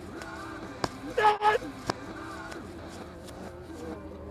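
A hammer thrower's short, loud yell on the release, one held voiced shout of about half a second, set between two sharp clicks about a second apart.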